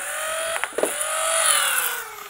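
The flywheel motors of a 3D-printed full-auto Nerf Rival blaster whine steadily while a few Rival balls are fired in quick sharp shots during the first second. From about one and a half seconds in, the motors wind down and the whine falls slowly in pitch.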